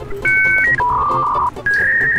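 A short electronic jingle of a few clean held notes: a two-note chord, a lower note about the middle, then a higher note that runs on near the end.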